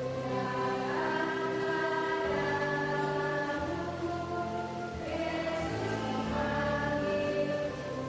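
Children's choir singing a slow hymn together, in long held notes.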